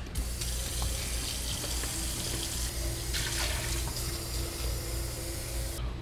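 Kitchen faucet running a steady stream of water. It is turned on right at the start and shut off shortly before the end.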